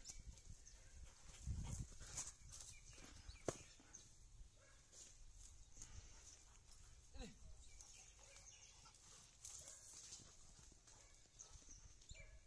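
Near silence: faint rustling and a few soft knocks in grass and dry brush, with a brief low falling sound about seven seconds in.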